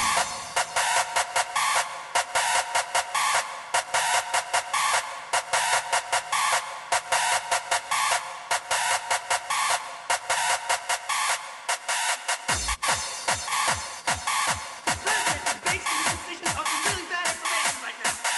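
Early hardstyle music from a live DJ set: a fast, steady electronic beat with the bass filtered out, until the deep kick drum comes back in about twelve seconds in.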